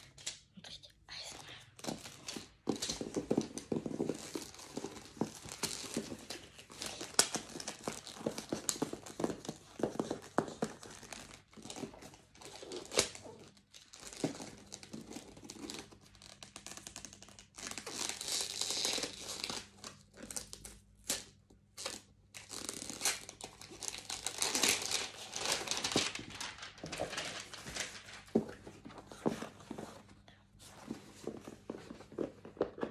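Packaging crinkling and tearing as a headphone box and its case are unwrapped and handled. Irregular rustles and clicks, with louder bursts of crinkling about two-thirds of the way through.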